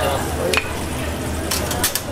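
Olive oil sizzling in a terracotta cazuela of ajillo on a gas burner, with metal tongs clicking against the hot dish a few times as it is gripped and lifted.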